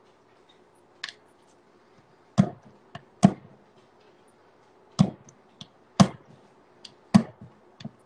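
A kitchen knife is stabbed point-down into a chocolate bar to break it into small pieces. Each stab gives a sharp knock against the surface underneath, about six strong ones at irregular intervals of roughly a second, with a few lighter taps between.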